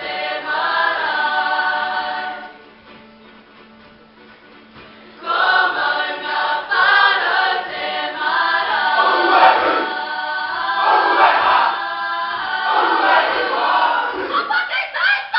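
A kapa haka group singing together in unison. The singing drops away for about three seconds early on, then comes back in louder and carries through to the end.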